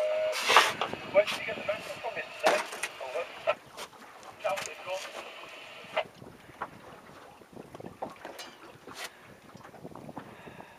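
Wind and sea water around a small boat while an angler plays a fish on a rod. Sharp clicks and knocks come thick in the first six seconds, then it settles to a quieter wash with only occasional clicks.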